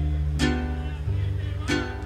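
Live mariachi band playing between sung lines: two strummed guitar chords, about half a second in and again near the end, over held low bass notes.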